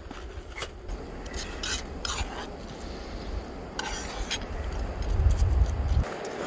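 A small spatula stirring and scraping hash browns and water in a nonstick backpacking frying pan: a few scattered scrapes and taps against the pan. A low rumble runs underneath and swells near the end.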